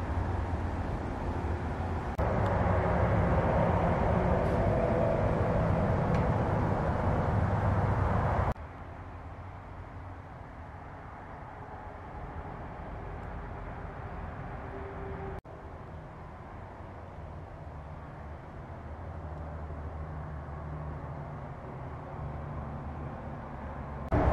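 Steady rumbling background noise with a low hum inside a large metal storage building. About eight seconds in it drops abruptly to a quieter level, and there is one faint click later on.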